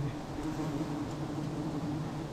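A swarm of wild honey bees buzzes in a steady, even hum around their open comb. The colony has been stirred up as the comb is harvested for honey.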